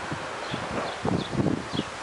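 Leafy tree branches rustling, with a run of soft irregular knocks and rustles from about half a second in until near the end.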